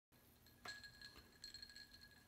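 Near silence, with a few faint clicks and a faint steady high tone.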